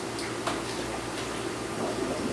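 Faint water sloshing as a coiled gravel-vacuum siphon hose is pushed under the water of an aquarium to fill it, over a steady background hum.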